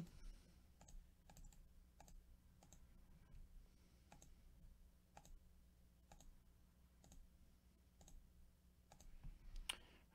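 Faint computer mouse button clicking in a steady run, about two to three clicks a second.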